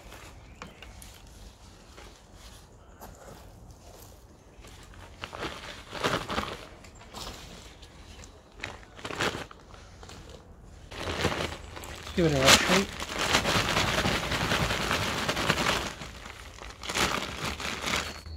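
Handfuls of dry compost mix, soil with dried leaves and tiny twigs, being scooped and packed into a plastic grow bag: rustling and crackling, with the plastic bag crinkling. It comes in scattered strokes at first and turns dense and continuous in the second half.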